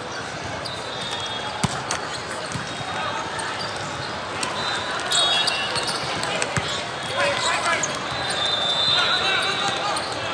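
Indoor volleyball play: a volleyball struck sharply a couple of times, with athletic shoes squeaking on the court, over a steady murmur of voices from players and spectators echoing in a large hall.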